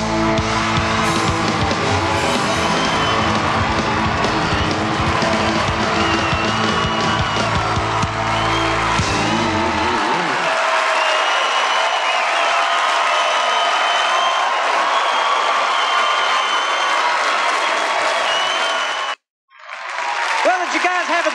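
A country band on electric guitars, keyboards and drums holds out a final chord while the crowd cheers. About halfway through the band stops and only the audience cheering and applauding remains, until the sound cuts off abruptly near the end.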